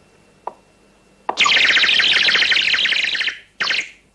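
Loud, exaggerated slurping at a dinner table: a small click about half a second in, then about two seconds of slurping with a rapid flutter through it, and a second short slurp near the end.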